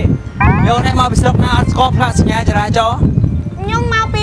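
Speech: people talking back and forth in rapid dialogue, over a steady low background noise.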